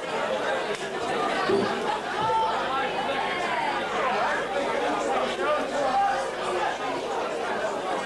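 Crowd chatter: many people talking at once in a large room, with no music playing.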